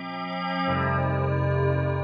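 Sustained synth pad chord processed by Ableton Live's Chorus effect, with a lower note joining about two-thirds of a second in. It grows louder over the first second as the track volume is raised.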